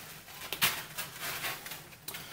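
Blue rigid foam wing-mast core being lifted and turned over by hand, its cut surfaces rubbing and scraping against the foam bed in a few short scrapes, the sharpest about half a second in.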